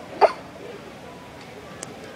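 A single short vocal sound from a person, a quick burst about a quarter of a second in, over a steady background hiss; a faint sharp click near the end.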